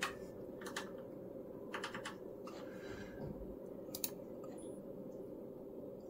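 Computer keyboard and mouse clicks: a few scattered keystrokes, with a quick run of three about two seconds in, as a new test frequency is typed in. A faint steady low hum lies underneath.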